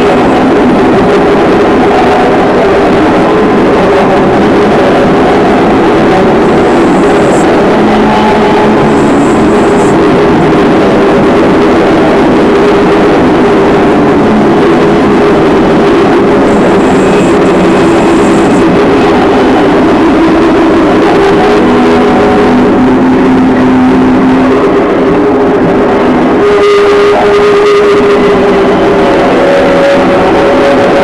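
Live noise music: a continuous, heavily distorted wall of sound at a very high level, with droning tones that drift in pitch in the low-middle range and a few brief high whistling tones. The texture shifts about 26 seconds in, when one mid-low drone comes to the fore.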